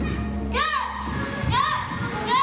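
Two short kiai shouts from children doing a martial arts routine, about a second apart, each rising and falling in pitch, over steady backing music that stops about halfway through.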